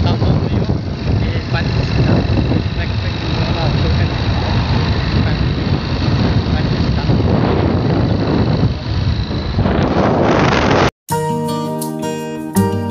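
Loud wind buffeting a phone microphone, a heavy rumbling noise with a man's voice half-buried under it. Near the end it cuts off abruptly and acoustic guitar music starts.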